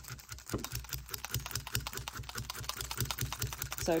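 Clover multi-needle felting tool jabbing rapidly up and down through a wool knitted swatch into a felting mat, a rapid, steady clicking. The jabs felt the fibres along the centre stitch column as reinforcement for a steek before it is cut.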